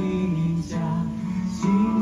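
A small group singing a hymn from song sheets with guitar accompaniment, the notes moving along at a steady, slow pace.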